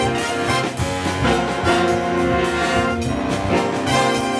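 Live jazz big band playing a full-ensemble passage, with trombones, trumpets and saxophones in held chords over a steady beat.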